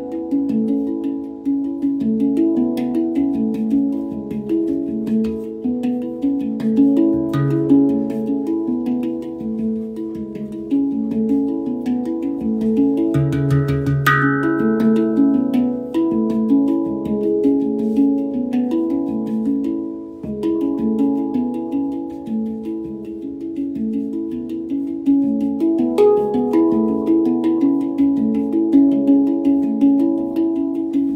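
Steel handpan played by hand: a quick, flowing run of ringing, overlapping notes, with a deeper note sounding about seven seconds in and again, more strongly, around thirteen seconds in.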